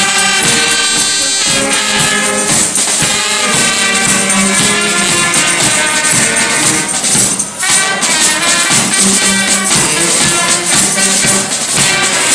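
Limburg carnival brass band (zate hermeniek) playing: trumpets and saxophone carry the tune over a steady bass drum and snare beat, with a tambourine shaken throughout. The music dips briefly about seven and a half seconds in.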